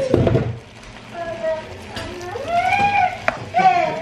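A brief clatter of kitchen handling at the start, then a high-pitched voice making drawn-out, rising-and-falling sounds, with a sharp click a little past three seconds in.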